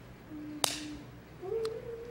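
A single sharp click about two-thirds of a second in, with a fainter click later and faint short hummed tones before and after it.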